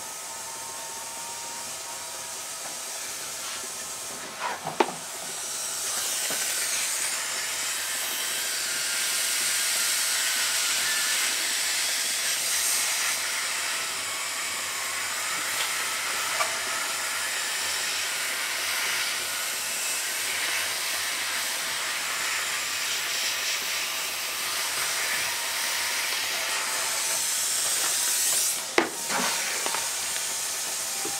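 Steam hissing steadily from a hose tip held under a towel against a guitar's neck joint, softening the old glue; the hiss grows stronger about six seconds in. A sharp knock comes about five seconds in and another near the end.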